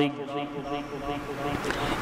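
A pause in a man's amplified speech: steady background noise through the microphone, swelling near the end as he draws breath before speaking again.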